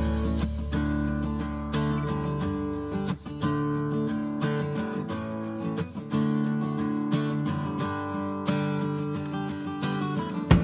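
Background music played on a strummed and plucked acoustic guitar.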